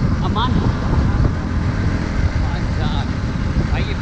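Motorcycle running along a road at speed, its engine rumble mixed with steady wind rushing over the microphone.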